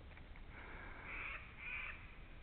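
Two faint, drawn-out caws of a crow, the first about half a second in and the second, shorter one near the end.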